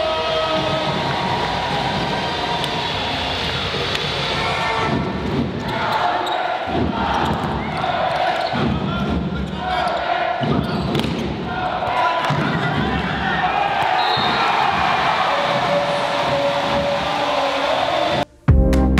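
Crowd noise filling an indoor sports hall during a volleyball match, with repeated sharp thuds from about five seconds in.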